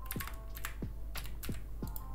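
Typing on a computer keyboard: about eight quick keystrokes at an uneven pace, as a short word is typed in.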